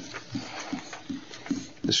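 A few short, low, quiet vocal sounds from a person's voice, murmurs or grunt-like syllables, with clear speech starting just before the end.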